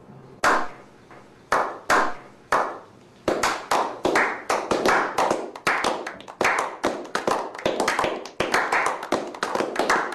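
A slow clap by a small group of men: single hand claps with a short echo, spaced about half a second to a second apart, then from about three seconds in more people join and the clapping quickens into steady applause.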